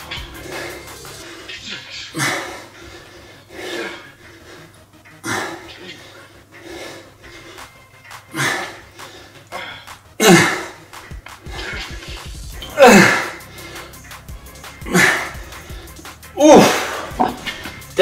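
A man breathing out hard with each dumbbell squat-to-press rep: a sharp exhale every couple of seconds, louder from about ten seconds in, over faint background music.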